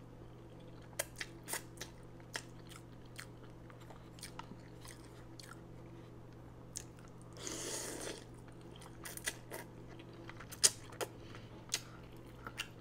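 Close-miked chewing of a mouthful of ramen noodles and vegetables, with many short wet mouth clicks and smacks. There is a brief rushing sound a little past halfway and a sharp click near the end, over a faint steady hum.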